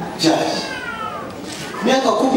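A high-pitched cry that slides down in pitch for about half a second, with speech before and after it.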